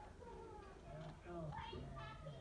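Faint, high children's voices from the background, with pitch that slides up and down and grows a little louder near the end.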